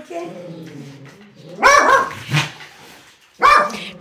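A dog barking: one loud bark about a second and a half in and a shorter one near the end, over faint voices.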